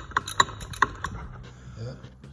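Socket ratchet clicking as it tightens the water pump housing bolts on an outboard's lower unit, a few sharp clicks in the first second, then quieter.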